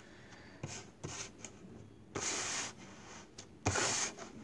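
Tarot cards sliding and rubbing across a tabletop as they are pulled down and laid out: a few short swishes, the longest about two seconds in and another just before the end.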